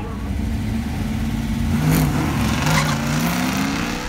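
Camaro ZL-1 tribute's all-aluminium 427 V8 accelerating hard down a drag strip, its exhaust note rising steadily in pitch.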